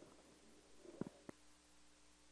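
Near silence: room tone, with two soft knocks close together about a second in.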